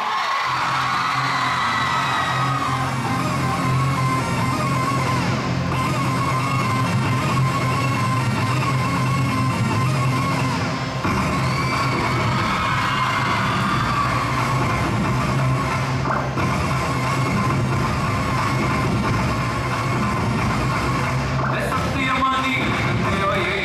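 Dance music playing loud and steady, with a continuous bass line.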